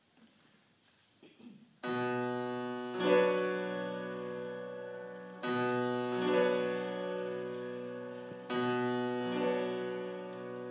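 Grand piano playing the opening of a show-tune accompaniment: after a quiet start, held chords struck about every three seconds, each left to ring and fade.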